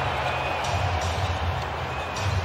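Arena music with a pulsing low bass line over a steady haze of crowd and court noise.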